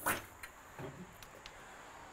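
A short knock right at the start as the lift-up side door of an alloy tray canopy opens, followed by quiet.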